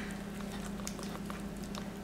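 Faint sawing of a knife through a pan-seared filet mignon steak held with a carving fork on a ceramic plate, with a few light ticks, over a steady background hum.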